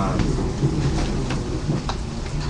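Steady rumbling noise of a crowded room, with a few faint clicks.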